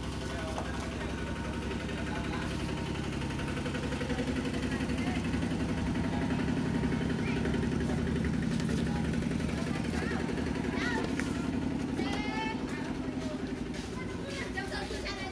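Konica Minolta production printer running steadily at speed, feeding heavy 300 gsm card through and stacking printed sheets in its output tray. A voice is heard briefly over it late on.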